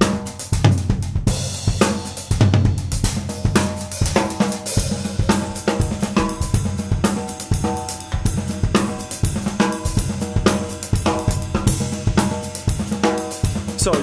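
Drum kit playing a groove in an odd meter, with snare, bass drum, hi-hat and cymbals, along with a pitched play-along backing track.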